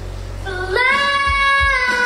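A young girl singing a country song solo into a handheld microphone over backing music. About two-thirds of a second in, she slides up into a loud, held note that lasts about a second.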